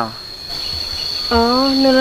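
Steady, high-pitched drone of insects in the vegetation, one unbroken tone. About halfway through, a woman's voice starts speaking over it and becomes the loudest sound.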